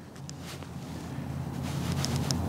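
Low outdoor rumble, wind or distant traffic, that grows steadily louder, with two faint ticks near the start.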